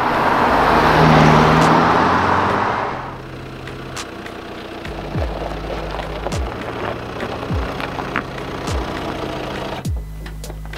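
Audi A5 driving past: tyre and engine noise swells to a peak about a second in and fades away by three seconds, over background music. After that, background music with a deep kick drum about every 1.2 seconds.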